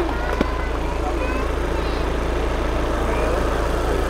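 Volkswagen Passat TDI four-cylinder turbodiesel idling steadily with the hood open, running on diesel distilled from plastic waste. Faint voices and a single small click about half a second in.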